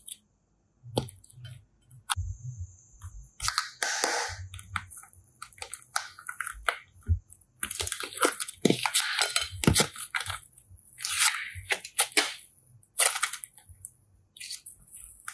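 Hands squeezing, kneading and stretching soft slime: irregular sticky squishes, crackles and small pops, sparse at first and busier and louder in the second half.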